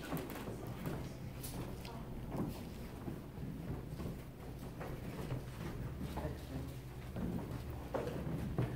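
Quiet room tone in a church sanctuary: a steady low hum, with a few faint, scattered knocks and rustles.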